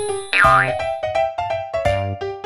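Background music with a steady beat of short notes, and a brief sound effect that swoops down and back up in pitch about half a second in.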